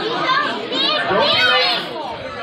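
Children chattering and calling out over one another, with one high child's voice rising above the rest partway through.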